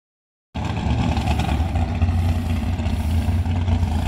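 Drag racing car's engine idling with a deep, steady rumble while the car creeps slowly. The sound starts about half a second in.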